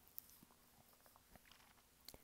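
Near silence: room tone, with one faint click about a fifth of a second in.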